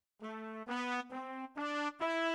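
Sampled brass section (Native Instruments Session Horns, full-section patch in Kontakt 5) played from a MIDI keyboard: four short notes climbing step by step, each about half a second long.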